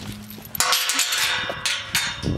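Metal pipe gate clanging: a sudden strike about half a second in that rings on for about a second.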